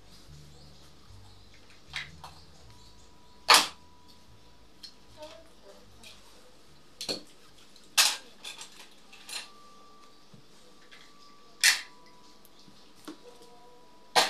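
Scattered sharp clicks and taps of hard objects being handled and set down on a work table while fabric is laid out, about seven in all, the loudest about three and a half seconds in and again about eight seconds in.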